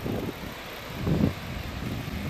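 Wind buffeting the microphone, a steady low rumble with a brief louder gust about a second in.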